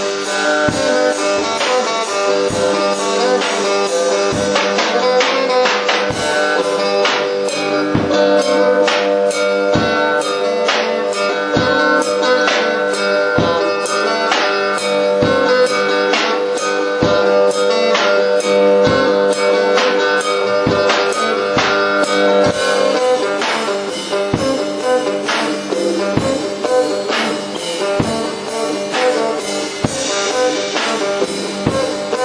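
Blues jam on a cigar box guitar backed by a Session Pro drum kit: plucked guitar notes over a steady drum beat.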